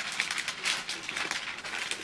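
White tissue paper rustling and crinkling as it is handled and folded back, with a steady run of irregular small crackles.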